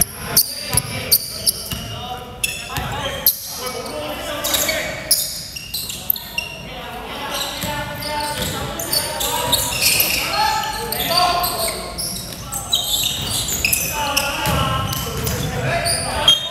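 A basketball being dribbled on a wooden gym floor, a quick run of bounces about two to three a second in the first few seconds and more later, echoing in a large hall. Players' voices call out over it.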